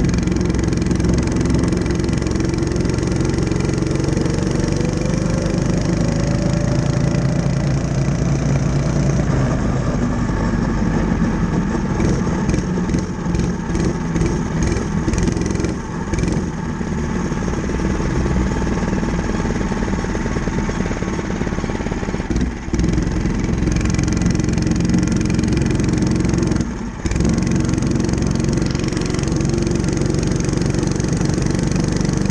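Mini bike's small engine running under way, its pitch rising as the bike speeds up over the first several seconds. The engine sound dips briefly three times, around the middle and twice near the end.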